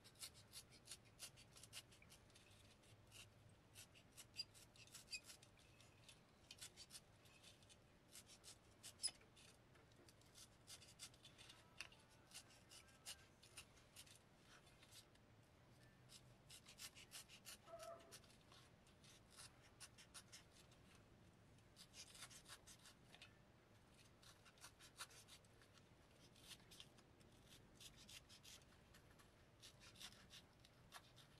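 Faint, rapid scratchy clicks in short runs: a hobby knife blade cutting out the old dust cap and cone of a Bose 301 Series II woofer, the first step of a recone.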